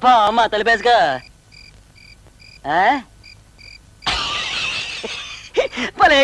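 A cricket chirping in short, evenly spaced high chirps, about three a second, heard in a pause between a man's lines of dialogue. Near the end of the pause comes a stretch of hissing noise.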